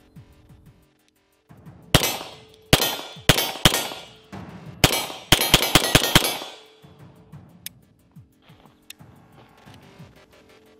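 Beretta M9 9mm pistol firing about a dozen shots in two strings: four spaced shots, then a faster run of about eight, with steel targets ringing from the hits. Background music plays underneath.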